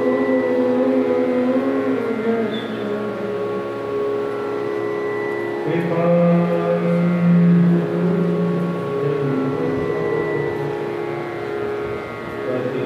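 Indian devotional music: long held sung notes over a steady drone, the melody changing pitch slowly and stepping to a lower held note about six seconds in.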